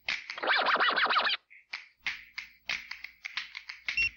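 Vinyl-style record scratching from a DJ turntable app on an iPad, lasting about a second, set among a string of short clicks and taps. It ends with a brief electronic beep from a handheld scanner.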